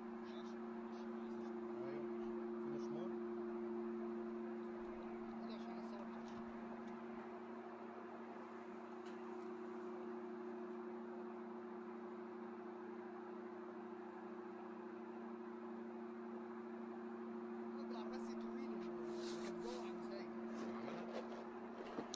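A faint, steady two-note hum, with a few faint clicks and taps of metal hand tools, some near the start and more near the end.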